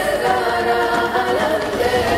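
Film trailer score: a choir singing long held notes over a thin, quieter backing, with little bass.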